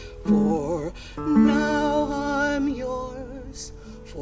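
A group of voices singing a slow folk song together, with acoustic guitar. One line starts with a wavering pitch just after the start, and more voices come in about a second in, holding long notes.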